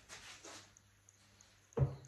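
A vase of artificial flowers set down on a wooden sideboard: one short, dull thud near the end, after faint handling noise.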